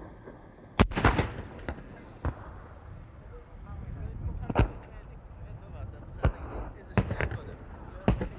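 Battlefield gunfire and explosions: a quick cluster of sharp reports about a second in, then single cracks and bangs every second or two, over a rough rumbling background.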